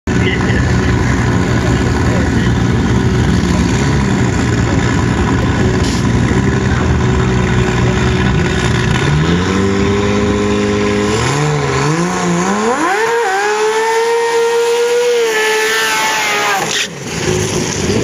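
Supercharged V8 dragster engine doing a burnout: a loud, steady idle for the first nine seconds, then revving up in steps to a high, held pitch for about three seconds. The revs then fall and cut off sharply shortly before the end.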